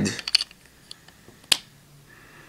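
Hard plastic toy-figure parts clicking as they are clipped together by hand: a couple of light clicks, then one sharp click about a second and a half in.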